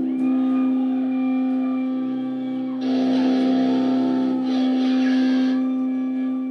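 Distorted electric guitars hold a sustained drone between songs of a live rock set, with feedback tones sliding in pitch over it. A noisier wash swells in about halfway through and drops out near the end.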